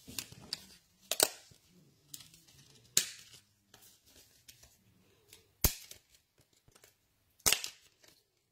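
Four sharp, separate clicks or taps, spaced a second or two apart, from hard crafting tools being handled on the desk.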